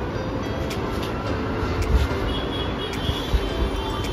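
A steady low rumble with light rustling and a few clicks, the handling noise of a handheld phone as it is moved about.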